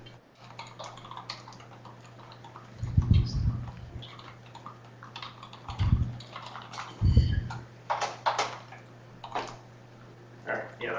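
Scattered clicks and rustles of computer keyboards being typed on, over a steady low hum. Three heavy low thumps stand out, about three, six and seven seconds in.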